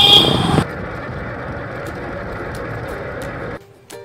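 Steady outdoor background noise after a brief louder burst at the start, with no clear source standing out; it cuts off abruptly near the end, where plucked-string music begins.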